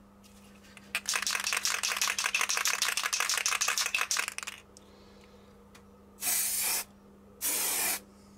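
Aerosol can of matte varnish shaken hard, the mixing ball rattling rapidly for about three and a half seconds. Then two short sprays, each under a second, hiss out a coat of varnish.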